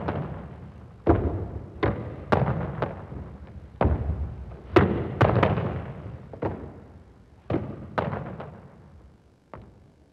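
A squash ball struck by a racket and rebounding off the court's walls and wooden floor. About a dozen sharp, echoing smacks come at uneven intervals of about half a second to a second, fading towards the end, as the player hits alternate forehand and backhand boasts off the side wall.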